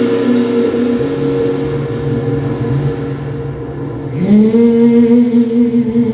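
Small vocal group singing long held notes over keyboard accompaniment; about four seconds in, the voices slide up into a new, louder held chord.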